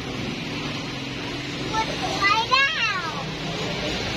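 A young child's brief high-pitched call, about two seconds in, over a steady low background hum.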